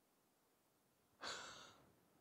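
Near silence, then a little over a second in a single short breathy sigh that fades away.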